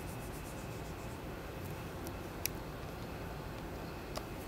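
Faint rubbing of fine sandpaper, folded into a small pad and worked by hand over the lacquered rosewood fingerboard of a Strat neck, over a steady low noise bed. One sharp little click about halfway through.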